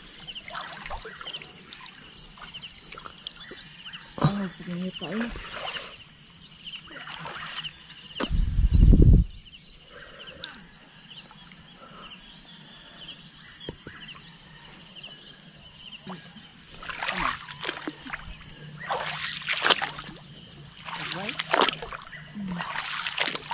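Outdoor pond ambience: a steady high-pitched insect drone with short snatches of voices. A loud low rumble of about a second comes around eight seconds in.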